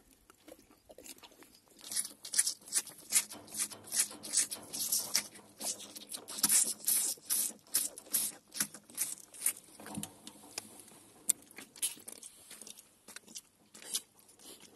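A calf sucking on the rubber teat of a milk feeder, a rhythmic run of sucking pulls about two to three a second that starts about two seconds in and eases off near the end.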